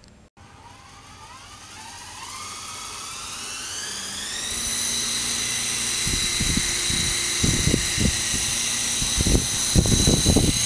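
Small electric RC toy helicopter spinning up: a whine that rises in pitch over the first four or five seconds, then holds a steady high pitch as it lifts off and hovers. From about six seconds in there are irregular low thuds.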